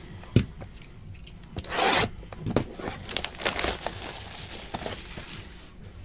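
Plastic wrap being torn open on a sealed trading-card box: a sharp click near the start, a short rip about two seconds in, then crinkling and small clicks.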